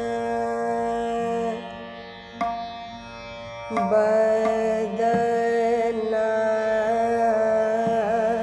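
Hindustani classical female voice singing Raag Ramkeli in slow, long held notes over a steady drone. The voice drops softer in the middle, then comes back strongly on a sustained note with small wavering ornaments near the end.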